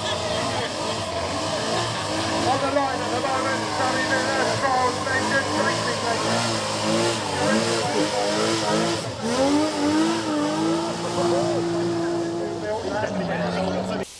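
Mk1 Jaguar racing saloon doing a rolling burnout, its straight-six engine revving hard with the rear wheels spinning. The pitch rises and falls, climbs and holds high for a few seconds near the end, then drops.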